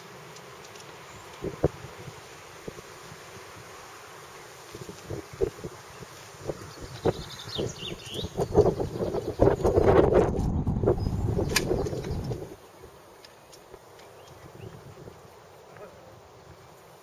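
Metal clicks and knocks from the quick-release wheels being fitted and adjusted on an aluminium telescopic mast's tripod legs. They are scattered at first and grow busier, with a louder stretch of rough rattling noise from about eight to twelve seconds in that stops abruptly.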